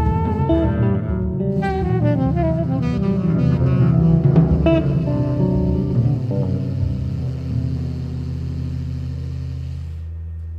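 Live small-group jazz with saxophone, guitar and double bass. A busy passage of quickly changing notes in the first half settles after about six seconds into a held low chord that rings on.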